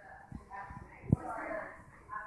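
Indistinct voices of people talking in the room, with a single sharp tap or knock just after a second in.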